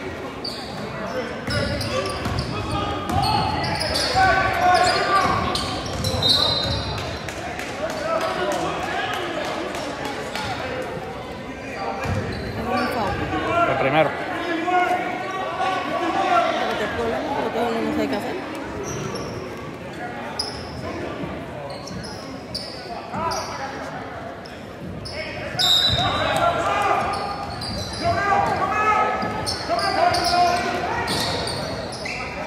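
Basketball bouncing on a hardwood gym floor during play, under the chatter of spectators' voices echoing in a large hall. A couple of short high sneaker squeaks stand out, about six seconds in and again near the end.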